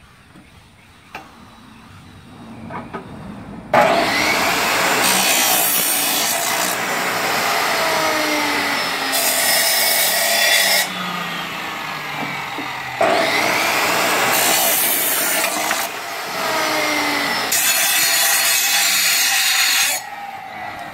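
DeWalt chop saw with a metal-cutting blade starting up suddenly about four seconds in and cutting iron balusters. Several loud grinding stretches come as the blade bites the metal, with the motor's pitch falling under load. The sound eases for a couple of seconds in the middle, then comes back as loud for another cut.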